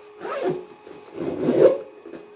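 Zipper on a cosmetic bag being pulled by hand: two rasping zip strokes, a short one near the start and a longer, louder one just past the middle.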